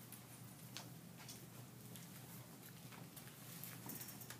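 Faint, irregular taps and squeaks of a dry-erase marker writing on a whiteboard, over a low steady room hum.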